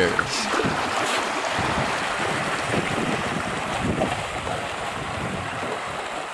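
Steady wind noise on the microphone over water rushing and lapping along a boat's hull under sail.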